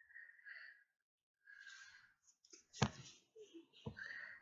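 Faint breathing and sighs from a person close to the microphone, with a short thump about three quarters of the way through and a softer one near the end.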